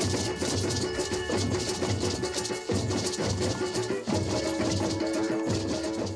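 A percussion group playing drums and shakers in a steady, driving rhythm, on instruments made from recycled materials such as sofa vinyl, PVC pipe and building-site scrap metal.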